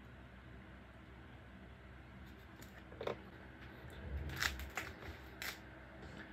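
Faint room tone, then from about three seconds in a few light clicks and rustles of small parts and items being handled on a hobby workbench.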